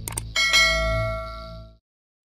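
Two quick clicks followed by a bright bell ding that rings and fades, then cuts off abruptly about a second and a half in: a notification-bell sound effect.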